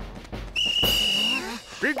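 A whistle blown once, one steady high note lasting just under a second, signalling the start of the fruit-catching race.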